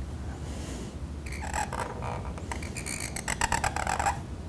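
A quick run of small clicks and light scratches as a calligrapher's reed pen (qalam) is picked up and handled, growing denser in the last second and a half as the pen comes to the paper.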